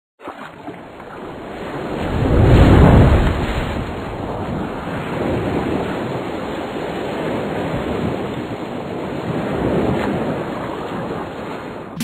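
Ocean surf: a wave swells and breaks, loudest about two and a half to three seconds in, then steady washing surf with a smaller swell near ten seconds.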